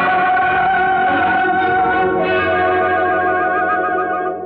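Instrumental interlude from an old Tamil film song: sustained held notes with no singing, and a quick trill in the upper line from about halfway through.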